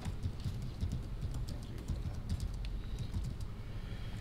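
Room tone in a meeting chamber: a low steady rumble with scattered light clicks and taps.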